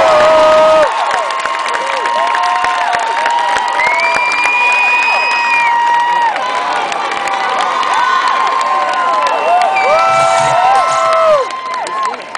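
Concert crowd cheering and shouting at the end of a song, many high voices calling over one another; the band's music stops about a second in.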